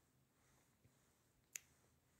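Near silence, broken once by a single short, sharp click about one and a half seconds in.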